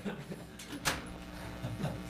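A door clicking shut once, about a second in, over a steady low room hum.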